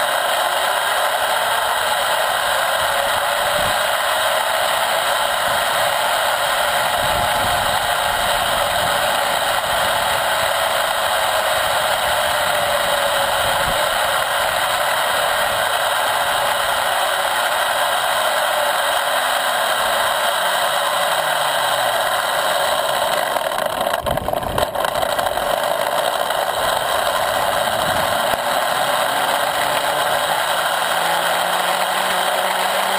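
Zipline trolley pulleys rolling along the steel cable, a steady whirring rattle with a faint whine that rises in pitch over the first few seconds as the rider speeds up and then slowly falls.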